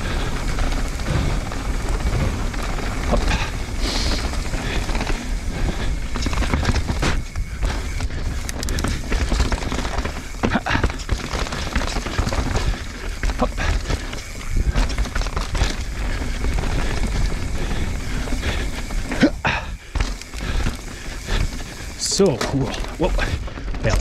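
Mountain bike riding fast down a dirt trail, heard from a camera on the bike or rider: a steady rumble of wind and tyres on dirt, broken by scattered clicks and knocks as the bike rattles over rocks and bumps. The rider calls out "oh" near the end.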